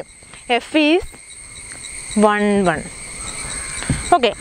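Insects, crickets or similar, trilling steadily at a high pitch in the surrounding vegetation, with two brief words from a woman's voice.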